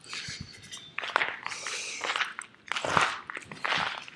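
Footsteps crunching on icy snow, about one step a second.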